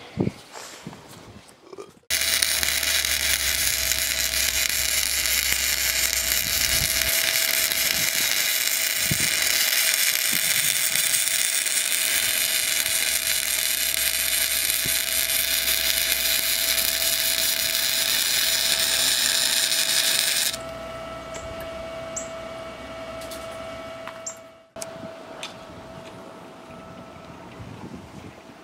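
Harbor Freight MIG 170 welder arc crackling steadily as a bead is laid on steel, starting sharply about two seconds in and running for about eighteen seconds. A steady hum runs beneath it and goes on alone for a few seconds after the arc stops.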